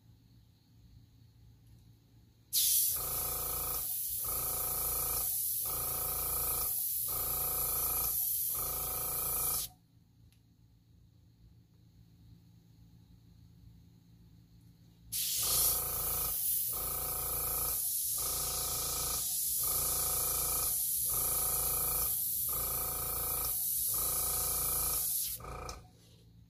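Airbrush blowing compressed air in two long bursts of about seven and ten seconds, a strong hiss over a hum that pulses about once a second, pushing wet alcohol ink across glossy paper into long leaf shapes.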